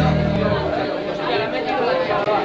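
The band's last held note rings on briefly and stops less than a second in, giving way to indistinct chatter from many people talking at once.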